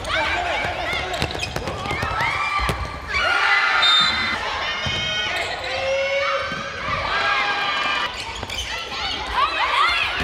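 Athletic shoes squeaking on the hardwood court floor many times as handball players run and cut, with the thud of the handball bouncing and players' voices calling out.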